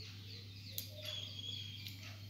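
Faint background sound: a steady low hum, with a few faint high chirps from distant birds and two small clicks.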